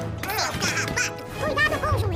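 Squeaky, high-pitched chipmunk cries, short calls that rise and fall in pitch, over music with a steady bass.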